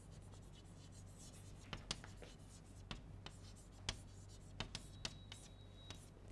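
Chalk on a blackboard writing out a word: faint, irregular taps and short scratches as each letter is struck and drawn.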